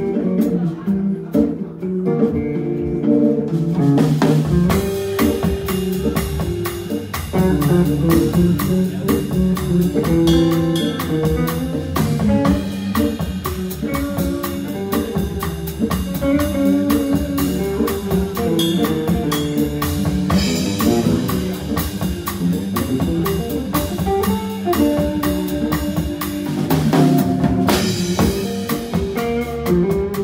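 Jazz organ trio playing live: electric guitar out front over Hammond B3 organ, with the drum kit and cymbals coming in about four seconds in.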